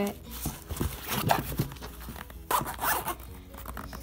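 Zipper on a zip-up paintbrush case being pulled along its track, a rapid run of ticks from the teeth. It goes in one long pull, then a shorter one about two and a half seconds in.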